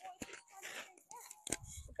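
Faint, distant voices murmuring, with a couple of light clicks. A nearby voice says "okay" right at the end.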